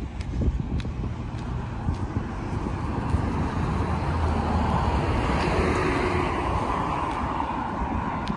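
Street traffic: a car's tyre and engine noise swells and fades as it drives past about halfway through, over a low rumble of wind on the microphone.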